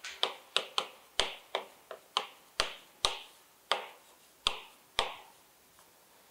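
Chalk writing on a chalkboard: a quick, irregular series of about a dozen sharp taps as the chalk strikes the board, each with a brief scrape after it, stopping about five seconds in.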